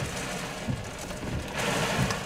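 Steady rushing of strong wind and rain near a tornado, with a low hum underneath; the hiss swells near the end.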